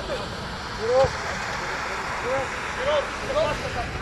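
Players calling out short shouts across an outdoor mini-football pitch, several brief calls a second or so apart, over a steady background hiss.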